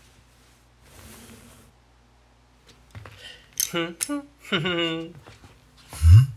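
A man's wordless vocalising, a few hummed sounds that slide up and down in pitch, starting about three and a half seconds in. Near them come a couple of sharp metallic clicks from a steel toggle clamp being worked.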